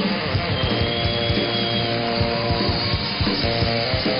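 Upbeat band music with a steady drum beat and guitar, played by a live studio band.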